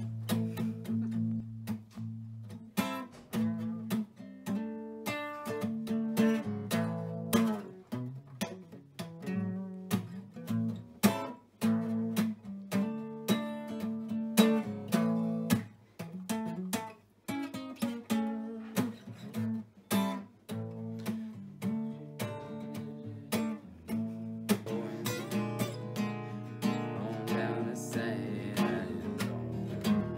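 Acoustic guitar played live, a slow tune of strummed chords and picked notes, falling briefly quiet about halfway through.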